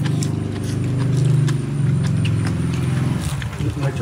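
A small engine running steadily at low revs, a pulsing low hum that is the loudest sound, with light clicks of chopsticks and utensils over it.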